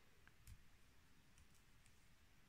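Near silence with a few faint clicks, the clearest about half a second in: a metal crochet hook clicking against long fingernails and yarn while crocheting.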